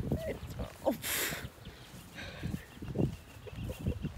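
Wind buffeting a phone's microphone as a low rumble, with a short burst of hiss about a second in.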